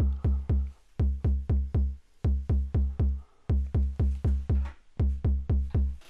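Noise Reap Foundation Eurorack kick drum module triggered in a steady rhythm of about four kicks a second, broken by short gaps. Each kick has a sharp click attack and a low, pitched boom that rings out briefly. The output is clean, with no added effects.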